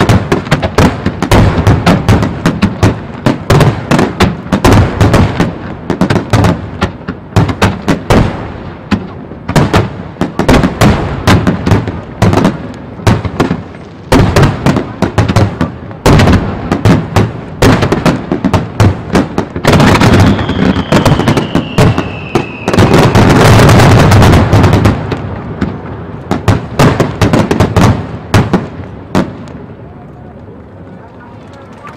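Starmine fireworks barrage: firework shells bursting in rapid, dense succession. About twenty seconds in, a falling whistle runs for a couple of seconds, then the bursts merge into an unbroken loud volley, and they thin out towards the end.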